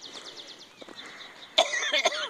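A person coughs once, loudly and suddenly, near the end.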